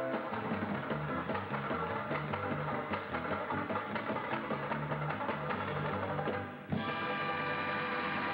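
Banjo played with rapid, dense picking in a fast tune. About seven seconds in, the picking breaks off abruptly and steady held notes ring on.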